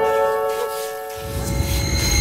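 Background music: a held chord of steady tones that fades out about a second in, followed by a deep low rumble that swells near the end.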